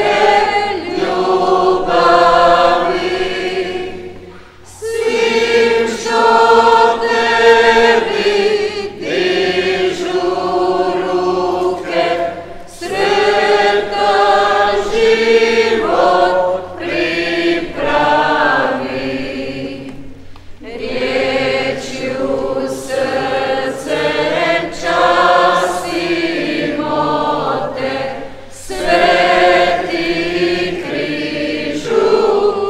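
A group of voices singing a church hymn, in sung lines separated by short breaks about every eight seconds.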